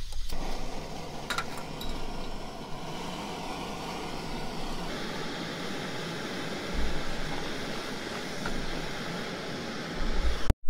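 Canister backpacking stove burner lit and burning with a steady hiss, with a few metallic clinks about a second in. From about five seconds, water is poured from a plastic bottle into a stainless steel pot set on the flame.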